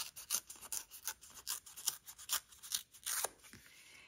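Coloured cardstock being torn by hand along a line wetted with a water painter. The damp paper gives a quick, irregular run of small crisp rips for about three seconds, then goes quieter. The water has weakened the paper along that line so it tears there.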